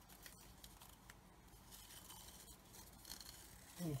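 Tamiya masking tape being peeled slowly off the painted plastic of a model rocket stage. It makes a faint crackle with a few small clicks.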